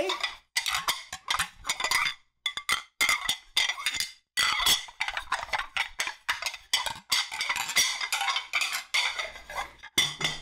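Ceramic dinner plates clattering and clinking against each other in quick, irregular knocks close to a microphone, with a few short pauses.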